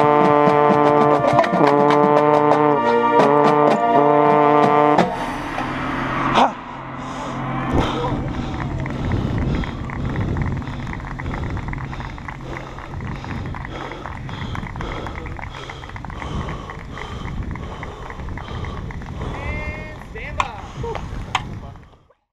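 Drum corps brass section, with a euphonium right at the microphone, playing loud held chords broken by short rhythmic cut-offs, ending abruptly about five seconds in; a single drum hit follows. The rest is the corps members' loose voices and chatter.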